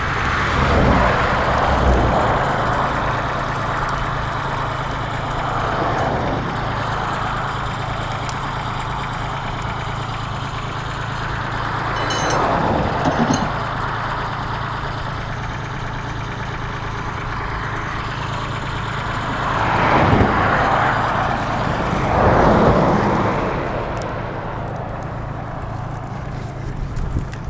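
Road traffic passing: five vehicles go by one after another, each a swell of tyre and engine noise that rises and fades, over a steady low hum of an idling engine.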